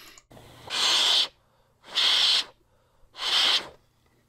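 A person blowing three short puffs of air into an NES game cartridge, about a second apart, close to the microphone.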